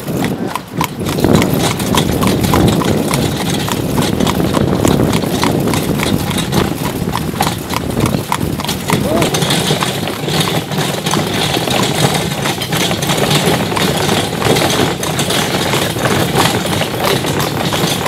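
A carriage horse's shod hooves clip-clopping steadily on paving and cobblestones as it pulls the carriage, with people's voices mixed in.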